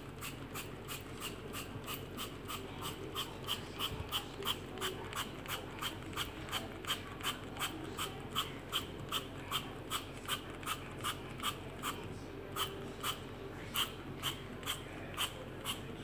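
Hand trigger spray bottle squirted over and over in quick succession, about three short sprays a second, onto a metal mesh cooker-hood grease filter; the spraying stops just before the end.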